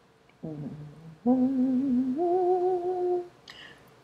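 A woman humming with her mouth closed: a short, quiet low hum, then a longer held hum with a slight waver that steps up to a higher note a little past two seconds in.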